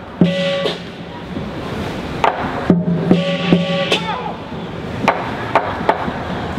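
Chinese lion dance percussion: sparse strikes of the drum and hand cymbals, with a held pitched tone near the start and a longer one, about a second, around the middle.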